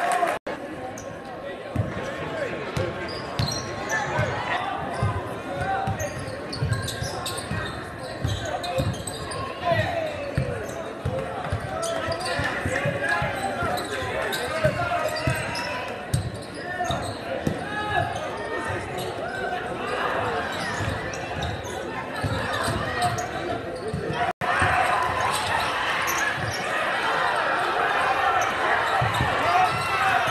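A basketball dribbled and bounced on a hardwood gym floor, a run of short thuds, under steady crowd chatter in a large gymnasium. Two very brief dropouts cut the sound, just after the start and about 24 seconds in.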